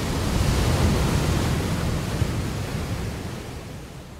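Steady rushing noise with a deep rumble underneath, like wind or surf, fading slowly near the end.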